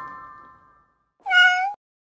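A single cat meow, about half a second long and held at a steady pitch, a little over a second in, after a chiming glockenspiel tune fades out.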